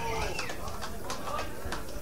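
Club audience in a pause between songs: low crowd chatter with scattered sharp clicks. A voice trails off at the very start.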